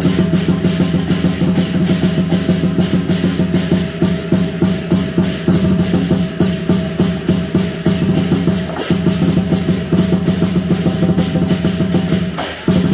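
Chinese lion dance percussion: a big lion dance drum beaten in a fast, driving pattern with cymbals clashing along with it, loud and unbroken.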